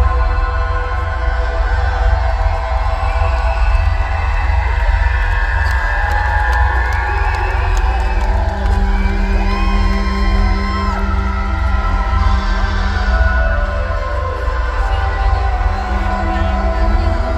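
Loud concert music over an arena PA: a deep, steady bass with long held synth tones, heard from within the audience, with cheering, whoops and whistles from the crowd over it.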